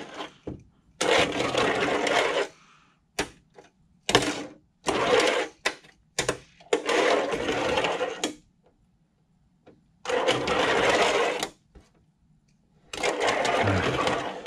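Fingerboard wheels rolling on a miniature half-pipe ramp: about six runs of rolling noise, each up to a second and a half long, with sharp clicks between them as the board's tail and trucks hit the ramp.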